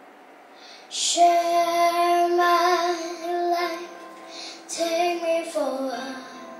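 A young girl singing into a handheld microphone. She comes in about a second in and holds long, steady notes, with a short break before the last phrase, which slides down in pitch near the end.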